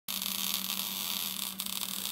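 Steady electrical static hiss with a low, even hum underneath, cutting in abruptly at the start.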